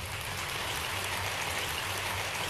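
A steady rushing noise, even and without pitch, in the soundtrack of the talk video being played back.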